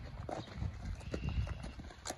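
A horse's hooves clip-clopping at a walk on dirt ground, as a string of irregular soft knocks.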